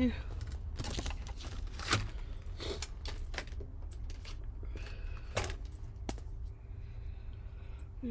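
Handling noise from craft supplies: a scattering of light clicks and taps, the sharpest about two seconds in, as a paper tag on string and marker pens are handled, over a steady low hum.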